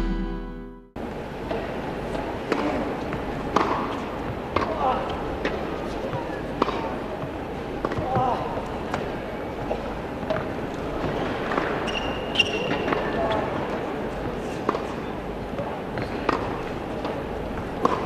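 Tennis ball bounced on an indoor hard court before the serve, then racket strikes and bounces in a rally, heard as scattered sharp pops over a murmuring arena crowd. A short stretch of electronic music fades out in the first second.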